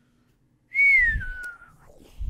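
A person whistling one long falling note that slides steadily down in pitch over about a second, starting just under a second in.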